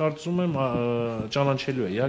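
A man speaking Armenian into reporters' microphones, with one syllable drawn out for about a second partway through.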